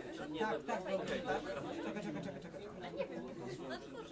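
Indistinct talking: several voices chatting at once in a room, with no words clear enough to make out.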